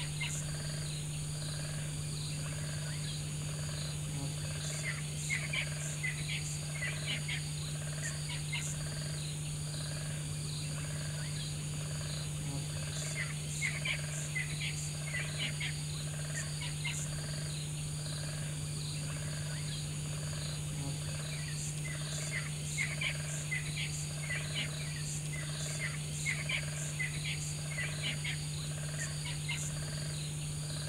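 Night-time nature ambience: a steady, high insect chorus with clusters of short chirping calls recurring every few seconds, over a low steady hum.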